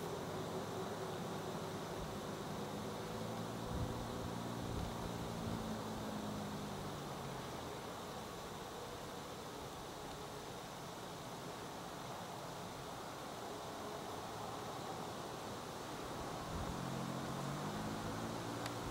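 Steady hiss with the faint low hum of a distant motor, which fades out about seven seconds in and returns near the end.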